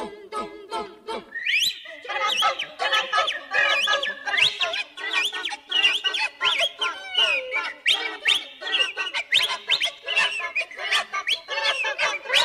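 A group of elderly women's voices first sings short, evenly beaten syllables, then breaks into a loud tangle of imitated bird and poultry calls: overlapping whistles, chirps and clucks, one woman whistling through her fingers.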